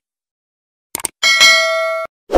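Subscribe-animation sound effects: a quick pair of clicks about a second in, then a bright notification-bell ding that rings steadily for under a second and cuts off sharply.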